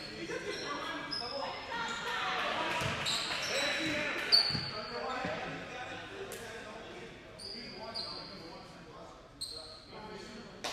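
Basketball shoes squeaking briefly on a hardwood court, with a basketball bouncing a few times; the sharpest thump comes about four and a half seconds in. Players' voices echo in a large gym.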